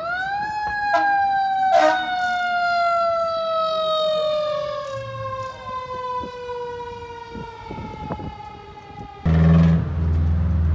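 Fire engine siren winding up quickly, then winding down in one slow, steady fall in pitch lasting about eight seconds, the long coast-down of a mechanical siren.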